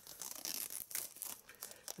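Clear plastic shrink-wrap being peeled and torn off a steelbook Blu-ray case: an irregular run of sharp crinkling crackles.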